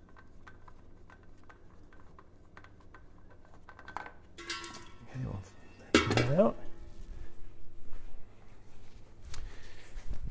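A spin-on oil filter being unscrewed by hand, with faint ticking. About halfway through come louder metallic clinks and clatter.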